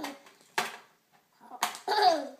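Plastic toys knocking and scraping against a small tin box as they are squeezed in by hand: a short knock about half a second in and a cluster of rattles near the end.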